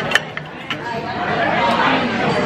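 Background chatter of diners in a busy restaurant, with a few sharp clicks in the first second.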